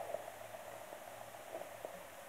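Faint steady background hiss with a low hum underneath and a couple of faint ticks near the end; no distinct sound event.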